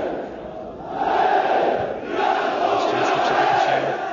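Football stadium crowd chanting in unison, the chant swelling and falling in phrases a second or two long.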